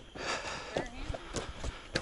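Footsteps and rustling of a person walking along a snowy pipe trench, with a soft hiss early on, a brief faint voice about a second in and a few sharp clicks in the second half.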